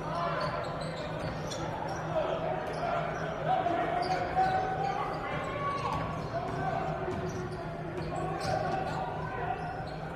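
A basketball being dribbled on a hardwood gym court in a large, echoing hall, with background voices and a steady low hum underneath.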